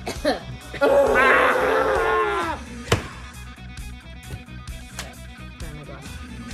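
A cough and a burst of laughter about a second in, over quiet background music with a steady pulse; a single sharp click follows just before halfway.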